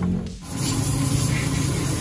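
Aerosol throttle-body cleaner hissing steadily through a straw nozzle as it is sprayed onto a twin-bore throttle body, starting about half a second in after a brief drop.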